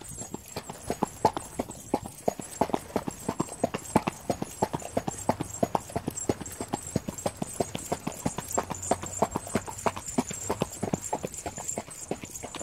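A horse's hooves clip-clopping on pavement in a steady walking rhythm, with a high jingling from the rhythm-bead necklace of bells at its neck.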